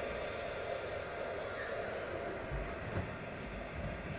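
Steady rumbling, hissing background noise of a large hall, with a few soft low thumps.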